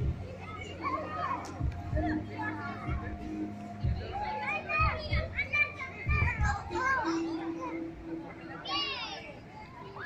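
Children shouting, squealing and chattering at play, with a high squeal about nine seconds in and a few low thumps. Faint music plays behind.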